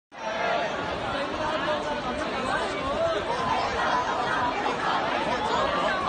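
A large street crowd of marchers talking at once: a steady babble of many overlapping voices.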